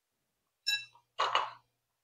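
A short metallic clink with a brief bell-like ring, like a steel rifle barrel or part being set down on the bench, followed about half a second later by a softer, duller noise.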